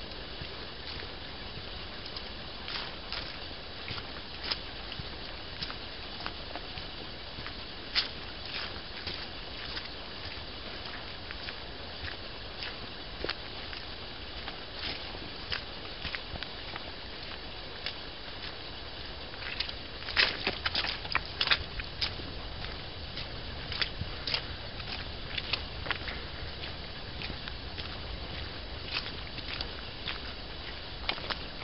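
Footsteps of a walker on a stony, leaf-strewn forest track, heard as scattered crunches over a steady hiss from a compact camera's microphone, with a short run of louder crunches about two-thirds of the way through.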